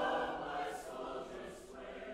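Large mixed choir singing a sustained phrase of a choral cantata, loudest at the start and easing off, with two brief hissed "s" consonants.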